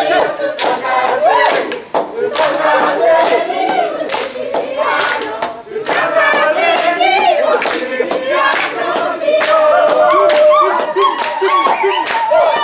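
A large group singing and shouting together, with hand claps throughout.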